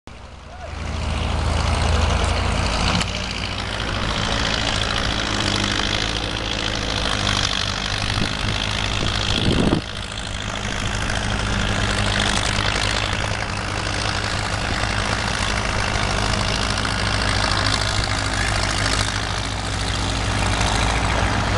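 Vintage Caterpillar D6 crawler tractor's diesel engine running loudly and steadily, with a short surge a little before halfway, after which the level dips and settles again.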